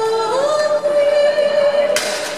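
A singing voice holding a long note, sliding up to a higher held note shortly after the start.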